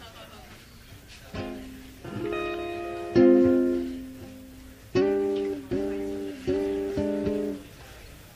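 A few chords strummed on a plucked string instrument. The chords start about a second and a half in. The loudest rings out a little after three seconds and dies away. Then come three short chords in a row from about five seconds, the last stopped sharply near the end.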